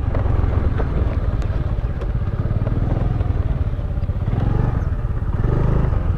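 A scooter's small engine running steadily while it is ridden, heard close up from the rider's seat, with a low, fast, even pulsing.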